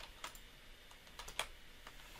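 A few faint, separate computer keyboard keystrokes, the loudest about 1.4 s in, as a copied address is pasted into a form.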